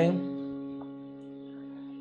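A piano chord held and slowly dying away: the one chord played as an inversion with the melody note on top.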